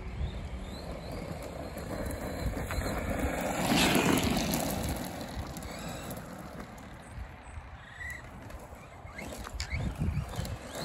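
Arrma Big Rock 3S RC monster truck driving over gravel. It is loudest about four seconds in as it passes close, then fades as it drives away.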